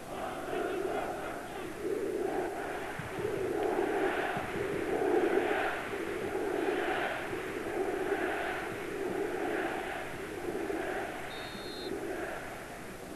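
Football stadium crowd chanting in a steady rhythm, a swell of voices a little more often than once a second, loudest in the middle.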